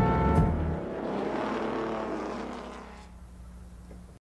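Vintage Ferrari racing car running at speed on a track, mixed with closing music. The sound fades out over the last few seconds.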